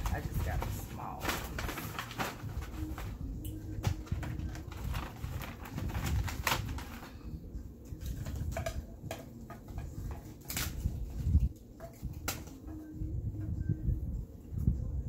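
Paper gift bags and packaged craft items rustling and crinkling as they are handled and packed, with frequent sharp taps and clicks. Twice a faint, low, drawn-out tone is heard under the rustling, once a few seconds in and again near the end.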